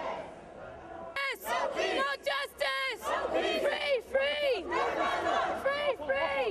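Protesters chanting: a low crowd murmur, then about a second in loud, high-pitched shouted slogans in a repeating chant rhythm.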